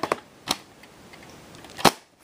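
Plastic VHS clamshell case being handled: two light clicks early on, then one sharp, loud snap near the end.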